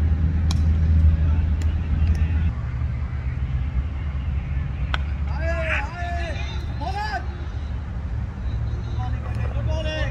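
Cricket bat striking the ball with a sharp knock about half a second in, over a steady low rumble. Players shout calls for the run a few seconds later.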